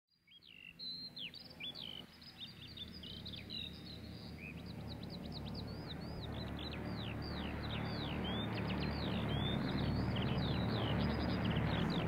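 Recorded birdsong played back as a sound effect: many quick, falling chirps, over a low drone that swells steadily louder.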